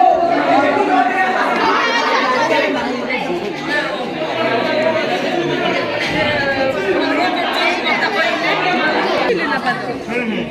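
Many voices talking over one another at once: loud, continuous crowd chatter with no single clear speaker.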